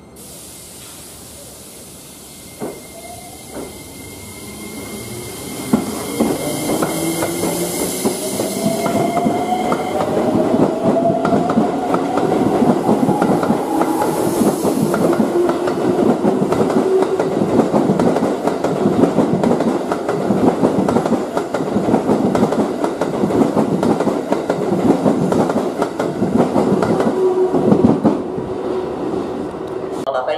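Keikyu electric train's traction inverter whining, rising slowly in pitch as the train accelerates, then the rapid clatter of its wheels over the rail joints as the cars run past close by, loudest in the second half.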